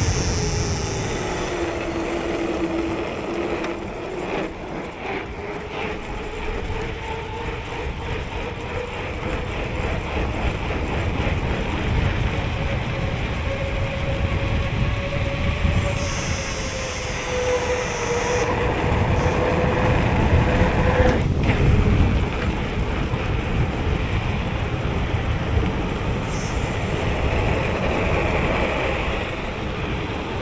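Mountain bike coasting fast downhill on asphalt: rumbling tyre noise and wind on the camera microphone, with a faint steady whine that slowly drifts in pitch.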